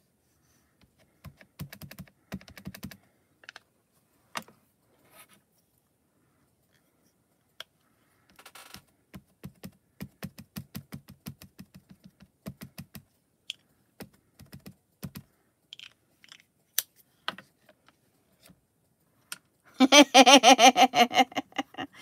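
Runs of quick clicking taps as a Hero Arts ink cube is dabbed onto a clear stamp held in a stamp-positioning tool, followed by scattered single clicks. Loud laughter near the end.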